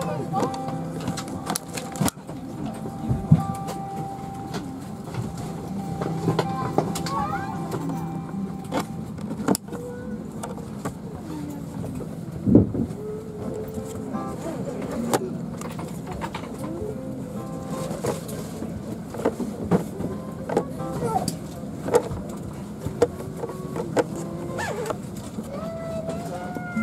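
Airliner cabin during boarding: a steady hum of the aircraft's air system, with passengers talking in the background and scattered clicks and knocks.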